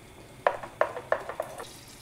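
Cookware clinking against a bowl of crêpe batter: about six quick, sharp clinks in a little over a second, while melted butter goes into the batter.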